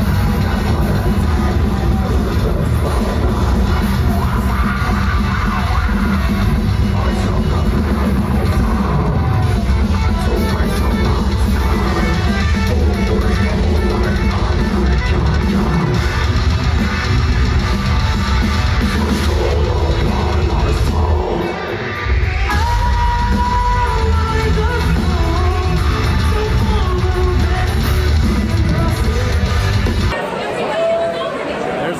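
Metal band playing live in a large hall: distorted electric guitars, bass and drums. A little past twenty seconds in the music drops out briefly, then a high lead guitar melody comes in over the band.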